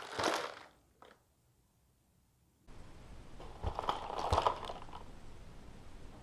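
Water sloshing over gravel inside a plastic bottle, with two dull knocks about four seconds in as the bottle is lifted and set back down on the counter. A brief crinkle of the plastic bottle being handled comes near the start.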